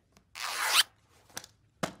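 A zipper pulled shut on a shoulder bag: one quick rasp of about half a second that gets louder toward its end, followed by a faint tick.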